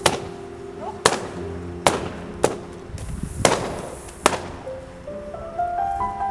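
Six balloons popping one after another, roughly one a second, each a sharp bang. Background music with sustained notes runs underneath and swells again near the end.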